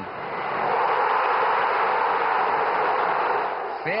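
Football stadium crowd cheering a goal: a dense, steady roar that swells during the first second and eases slightly near the end.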